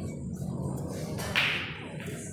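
A single sudden sharp hit about one and a half seconds in, the loudest thing in the moment, with a short hissing tail, over a steady low room hum.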